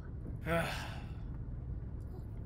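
A Maltese dog gives a single sigh, one breathy exhale about half a second in that fades away, a sign of the dog being fed up.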